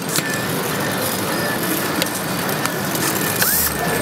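Steady assembly-line noise with a few light clicks, and a short run of an electric screwdriver driving a screw into a plastic phone housing a little over three seconds in.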